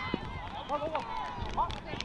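Several voices shouting and calling out from a distance, unintelligible, with a few faint knocks among them.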